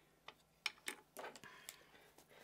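Several faint clicks and light taps from small plastic powder pots being handled and set down on a craft mat, with a soft rustle about halfway.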